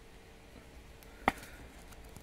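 A single sharp plastic click about a second and a quarter in, as a trading card is pushed into a rigid clear plastic toploader; otherwise faint room tone.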